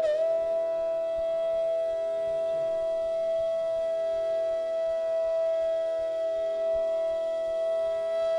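Intro music: one long note held steady in pitch for about eight seconds over a soft, steady drone.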